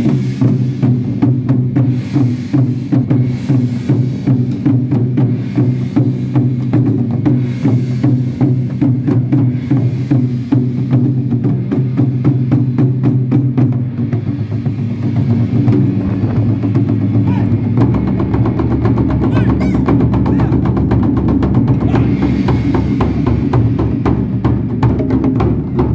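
Ensemble of Japanese taiko drums beaten with sticks in a fast, dense, unbroken rhythm. The low drum sound grows heavier about three-quarters of the way in.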